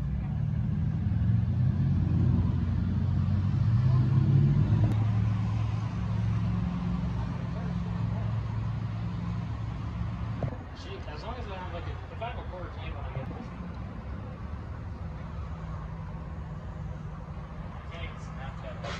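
A vehicle engine idling: a steady low hum, loudest in the first few seconds, that drops to a quieter level about ten seconds in.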